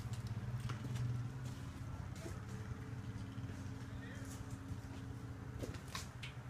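A steady low hum runs throughout, with a few faint clicks and light steps.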